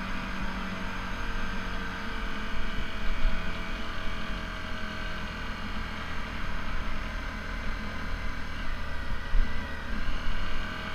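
Sport motorcycle engine running at a fairly steady pitch while the bike is ridden along the road, heard from a camera mounted on the bike, with wind rumbling on the microphone.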